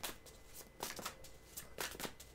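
Tarot deck being handled by hand: a few short, faint card flicks, about four in the two seconds.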